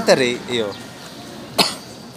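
A single short cough about one and a half seconds in, after a few words of talk.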